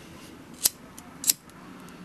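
A handheld lighter being struck twice to light it: two short, sharp clicks about two-thirds of a second apart.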